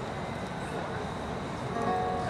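Steady background noise of a concert hall with an audience, in a pause between a performer's words; a few faint held tones come in near the end.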